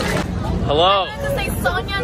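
A woman's voice exclaiming, then talking, over a steady rumble of outdoor crowd noise.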